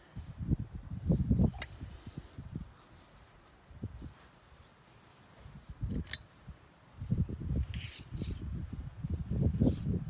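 Irregular low rumbling and rustling on an outdoor microphone, in bursts that come and go, with one sharp click about six seconds in.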